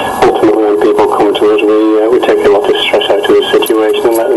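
Speech over a radio broadcast: a voice talking without pause, though the transcript caught no words here.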